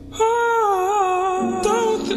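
A singing voice holds a long, wavering wordless note, then moves to a second note near the end, over a soft sustained backing in a hip-hop/R&B song cover.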